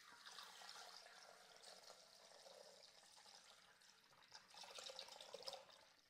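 Milk pouring from a carton into a Thermomix TM6's stainless-steel mixing bowl: a faint, steady trickle that grows a little louder near the end.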